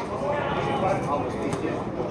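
Several men's voices talking and calling out over one another beside a football pitch, with a single sharp knock about one and a half seconds in.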